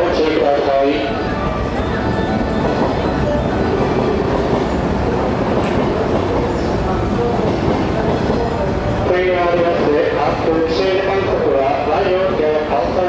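JR West 323 series electric train at a station platform: a steady mix of train noise and platform noise. Voices speak over it in the first second and again through the last few seconds.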